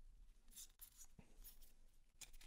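Faint scraping and soft clicks of trading cards sliding against each other as a stack is flipped through by hand.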